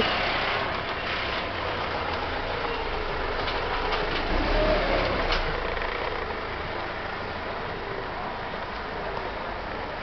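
Street traffic: a motor vehicle's engine passing close by, loudest about four to five seconds in, over a steady background of town noise.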